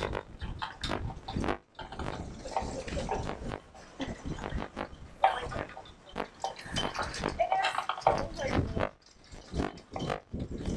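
A woman crying into a microphone: sobbing, sniffing and catching her breath in irregular gasps, with a few short broken cries. Her voice has broken down with emotion mid-speech.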